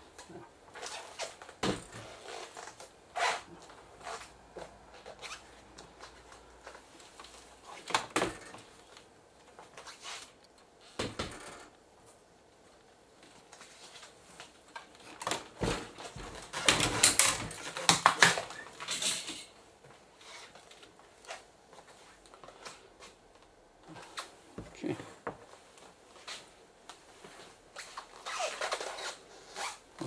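Scattered clicks, knocks and rustling of hands handling a disassembled LCD television's metal back panel and tools during reassembly, busiest about sixteen to nineteen seconds in.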